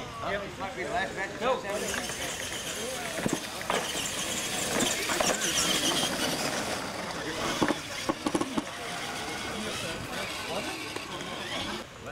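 Two radio-controlled monster trucks launched side by side on a dirt straight. Their motors and gearboxes give a steady high whine over the hiss of tyres on dirt as they run down the track.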